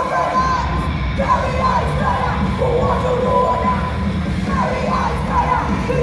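Live heavy metal band playing loudly, heard from inside the crowd in a large hall, with crowd shouting mixed in.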